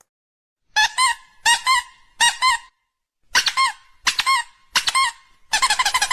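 High-pitched squeaky calls, short and pitched, repeated in a rhythm: two groups of three, then a faster, denser run near the end.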